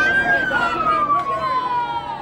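An emergency-vehicle siren wailing: its pitch tops out just after the start and then falls slowly as it winds down and fades.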